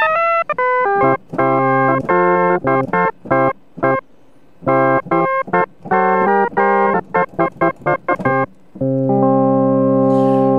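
Roland Boutique JU-06 synthesizer playing an organ-like preset that sounds like a toy organ. It opens with a quick falling run of notes, then plays short chords that cut off sharply, with a brief pause about four seconds in. A long held chord comes near the end.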